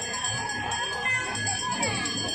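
Festival street sound: bells jingling and ringing steadily over a crowd's chatter, with a low beat pulsing a few times a second.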